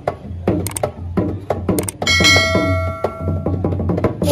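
Percussion music: a fast run of drum strikes, each dropping in pitch as it dies away. About halfway through, a metallic gong-like clang rings on for about a second over the drumming.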